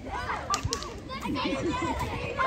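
Children's voices calling and chattering during outdoor play, with a short sharp click about half a second in.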